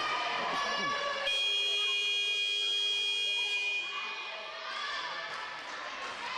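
Sports-hall timing buzzer sounding one steady electronic tone for about two and a half seconds, starting a little over a second in, amid players' and spectators' voices.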